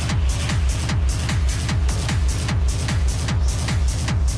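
Hard techno: a fast, steady kick drum, each kick falling in pitch, with hi-hat ticks above it.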